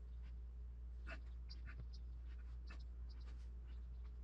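Faint, short scratching and rubbing sounds, scattered a second or less apart, as fingers work modelling clay on a sculpted face, over a steady low hum.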